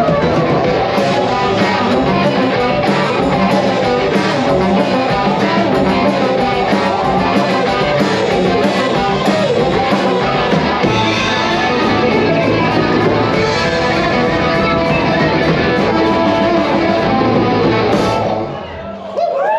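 A rock band playing live at full volume: electric guitars, bass and drum kit in a dense, steady groove.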